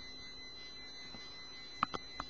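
Faint steady background noise of the recording with a thin, constant high-pitched whine, and two quick clicks close together near the end.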